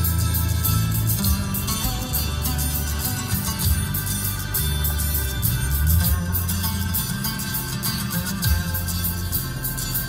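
Instrumental opening of a Turkish pop song playing over a Mercedes W213's cabin sound system: plucked strings over a steady, deep bass line, with no singing yet.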